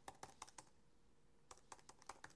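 Faint keystrokes on a computer keyboard: a few quick taps at the start, a pause of about a second, then a few more near the end.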